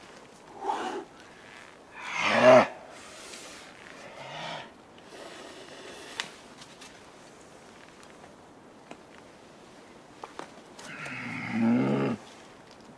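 A rock climber's effortful grunts and shouts while making hard moves: a few short grunts, the loudest about two and a half seconds in, and a long strained yell near the end.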